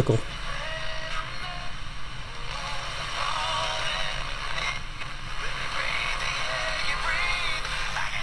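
Classical music from an FM station playing through the small speaker of a GE 7-2001 Thinline portable radio, with wavering vibrato notes over a steady background hiss.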